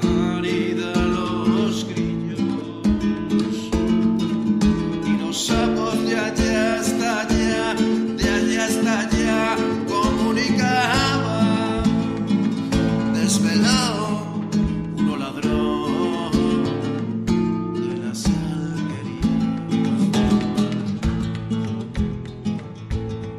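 Acoustic guitar playing a vidalita, an Argentine folk song form.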